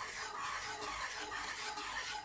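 Wire whisk stirring thick cornmeal porridge in a saucepan, in quick, even strokes that swish through the porridge and scrape against the pot.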